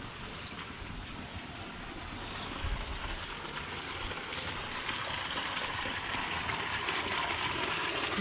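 Steady rushing outdoor noise without distinct events, growing slightly louder toward the end, with an uneven low rumble underneath.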